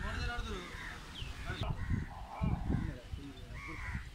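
Ambient field sound: people talking in the background, with crows cawing.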